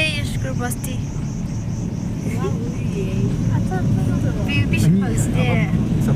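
Car engine and tyres making a steady low rumble, heard from inside the cabin while driving, with people talking over it.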